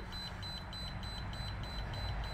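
Small water-cooling pump and PC running with chocolate milk as coolant, flowing slowly: a low hum under a thin, steady, high-pitched whine, with a faint fast ticking about eight times a second.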